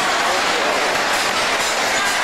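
Cars of a Music Express amusement ride running around their circular track at speed: a steady, loud rushing clatter.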